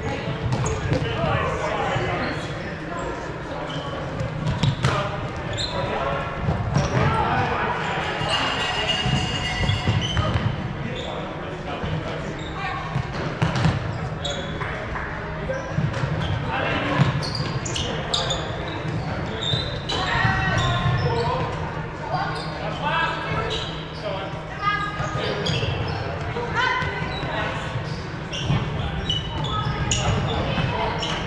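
Players' voices and calls echoing in a large gymnasium, with running footfalls and sneaker squeaks on the hardwood court.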